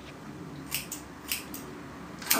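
Scissors snipping through a thick beard: two short snips about half a second apart.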